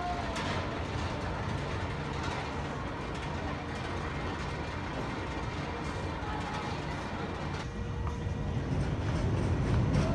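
A Vekoma SLC inverted roller coaster train runs along its steel track overhead, a steady rumble of wheels on track that grows louder over the last two seconds.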